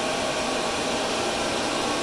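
A room full of Bitmain Antminer ASIC cryptocurrency miners running, their cooling fans making a loud, steady rush like a blow dryer.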